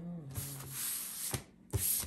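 A deck of tarot cards being shuffled by hand: a rushing rub of cards sliding against each other, then two sharp slaps of cards in the second half, the second one the loudest.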